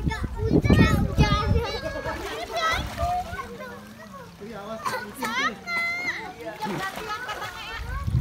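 Children's voices shouting and squealing as they play in a pool, with water splashing, loudest near the start; one child gives a rising squeal about five seconds in.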